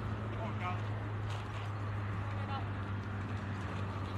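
Outdoor ambience at a ballfield: a steady low hum with a few faint, distant voices.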